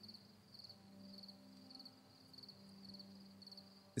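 Near silence with faint, regular cricket-like chirping, about three chirps a second, over a low steady hum.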